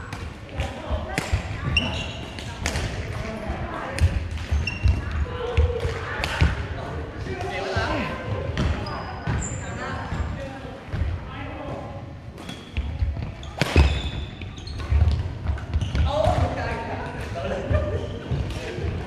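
Badminton rally on a hardwood gym floor: rackets hitting the shuttlecock, sneakers squeaking briefly and feet thudding on the court, echoing in a large hall.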